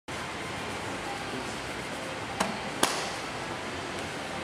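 Steady gym room noise with two sharp knocks close together, a little past halfway through.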